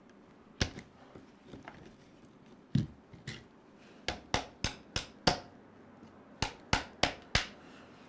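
Sharp taps from an MIP hex driver used as a hammer, knocking at a stubborn hinge pin in the plastic A-arm of an RC truck's rear suspension. A few scattered taps come first, then two quick runs of four or five taps.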